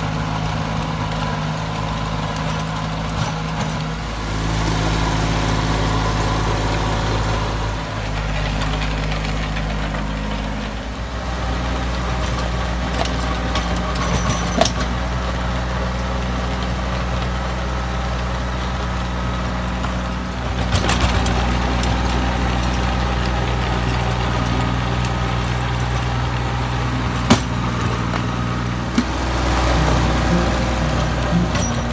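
Compact Iseki tractor's engine running steadily while driving a rotary tiller through soil. The engine note shifts a couple of times, with a few sharp clicks.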